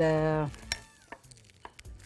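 A woman's drawn-out, held "eeh" at the start. Then a few faint, short clicks of a metal spoon against a bowl as she dips the spoon in water.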